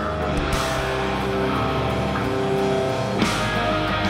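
Live rock band playing: held electric guitar chords over bass and drums, with cymbals washing in about half a second in and again near the end.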